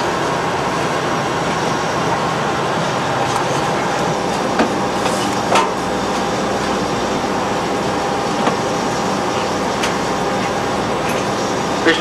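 Steady hum and rush of machinery and ventilation inside a diesel-electric submarine's control room while she is under way, with a few short clicks.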